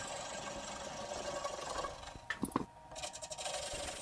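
A small wood lathe turning a little wooden steering-wheel blank while a quarter-inch turning tool lightly cuts a shallow concave shape into its edge, giving a steady hiss. A few sharp clicks come about halfway through, and then the sound drops quieter.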